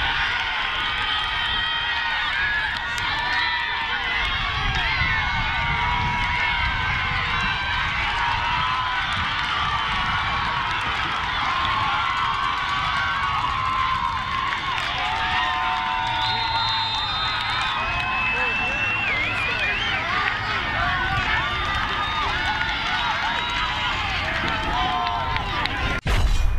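Crowd of spectators shouting and cheering, many voices overlapping at a steady level, with some held high shouts standing out.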